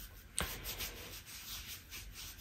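A wipe rubbed briskly back and forth over the skin of the back of a hand, scrubbing off eyeshadow swatches: faint, quick, repeated scratchy strokes, about three or four a second, after a small click about half a second in.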